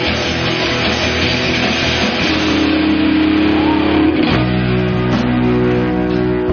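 Live rock band playing loudly, with electric guitars prominent. The chords change about four seconds in.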